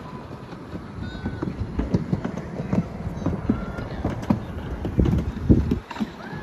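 Irregular low rumbling with scattered knocks from a Riblet fixed-grip chairlift chair riding downhill on the haul rope, mixed with wind on the microphone. A couple of faint, short, high calls come through over it.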